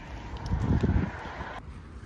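Wind buffeting a phone's microphone outdoors, with a louder low gust about half a second in that lasts around half a second.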